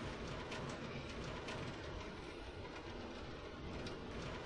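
Steady rain falling in a storm: an even hiss with a few faint ticks.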